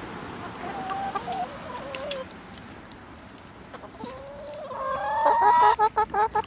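Chickens clucking while they feed on grain. A wavering call comes in the first two seconds, and from about four seconds in a long drawn-out call rises and holds, the loudest sound, breaking into quick clucks at the end.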